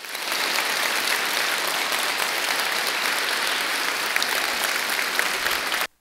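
Audience applauding, a steady even clapping that cuts off abruptly near the end.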